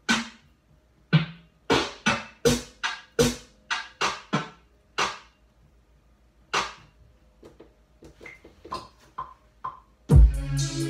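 Single electronic drum samples triggered one at a time from a pad controller, each a sharp hit with a short decay, at uneven spacing rather than in a groove. The hits grow quieter in the last few seconds, some with a short pitched ring.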